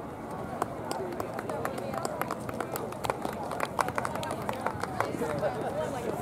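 Outdoor crowd background of distant voices and chatter, with many short, irregular clicks scattered through it.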